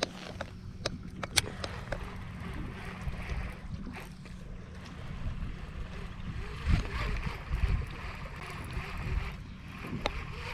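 Wind rumbling on the microphone over small waves lapping at a kayak, with a few sharp clicks near the start from handling fishing gear.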